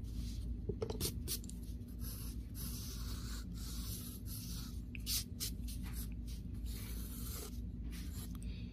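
HB graphite pencil scratching on paper in a series of short sketching strokes, retracing a circle's outline, over a steady low hum.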